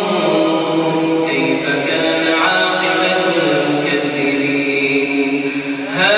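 A man reciting the Quran in melodic tajwid style, one long continuous phrase of held notes that slide and step in pitch.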